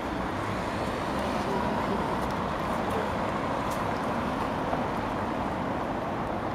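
Steady city traffic noise: cars driving across a paved square, an even wash of sound with no single event standing out.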